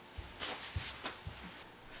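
Faint rustling movement and a few soft footfalls on a concrete floor.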